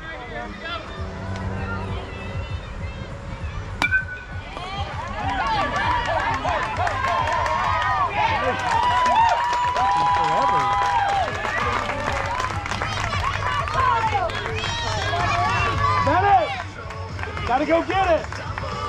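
A crowd of spectators yelling and cheering with many overlapping voices, including long drawn-out shouts, for a youth baseball hit. About four seconds in there is a single sharp crack of the bat hitting the ball, just before the yelling swells.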